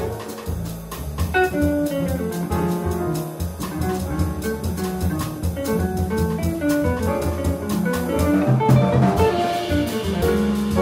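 Live jazz combo playing: hollow-body electric guitar over plucked double bass and drum kit with cymbals, the band growing fuller near the end.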